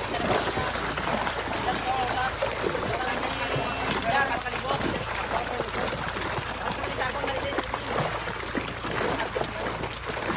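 Rushing, splashing water pouring into a harvest net, with milkfish thrashing in the flow as the pond is drained. Voices are heard faintly in the background.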